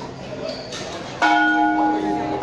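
A metal bell struck once about a second in, its ringing tone held and slowly fading over the murmur of a crowd.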